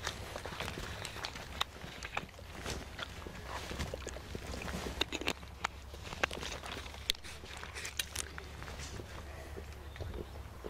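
Outdoor ambience: a low steady rumble under scattered, irregular light clicks and knocks, with faint voices of people nearby.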